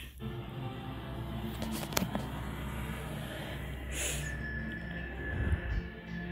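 Music from a TV show's soundtrack playing in the room, with a sharp click about two seconds in and a brief hiss around four seconds.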